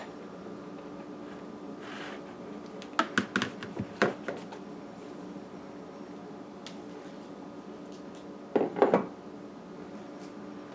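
A glass measuring cup knocking and tapping against the rim of a plastic mixing bowl as flour is tipped into it: a quick cluster of knocks about three seconds in, and another short burst of knocks near the end. A faint steady hum runs underneath.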